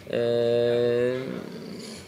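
A man's hesitation sound: a held, level-pitched 'eee' lasting about a second, then trailing off.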